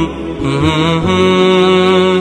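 Intro music: a vocal chant holding long, steady notes that slide slightly between pitches, with no instruments standing out.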